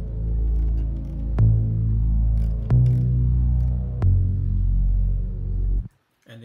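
Stacked retro synth chords play back: an analog mono lead layered with a fuzzy soul organ and an 80s sine synth. They sustain a heavy, bass-rich chord progression, with a new chord struck about every 1.3 seconds. The playback cuts off suddenly near the end.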